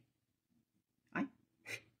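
A woman's short exclamation "ay" about a second in, then a quick breathy sound, with near silence around them.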